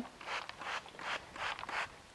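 Plastic trigger spray bottle spritzing water onto potting mix in a seed tray: about five short squirts in quick succession, moistening the mix before sowing.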